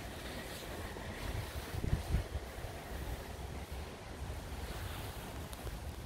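Wind rumbling on the microphone, with stronger gusts about two seconds in, over a steady rush of moving water.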